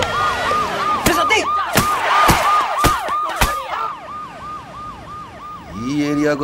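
Police siren sounding rapid wails that each fall in pitch, about three a second, growing quieter after the middle. About five sharp bangs land in the first half.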